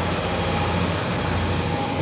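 A ferry under way, heard from its open deck: a steady low engine drone under an even rush of wind and water noise.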